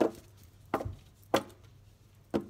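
Three sharp taps from a deck of oracle cards being handled and knocked against the table, spaced a little over half a second apart.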